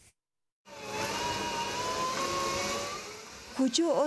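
After a brief gap of silence, an electric food-processing machine runs with a steady motor whine that rises slightly in pitch, fading near the end as a woman starts speaking.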